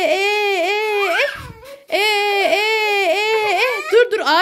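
A woman crooning a wordless 'eee eee' lullaby to lull the children to sleep, in a high, held voice that dips in pitch about three times a second. It comes in two long phrases with a short break a little over a second in.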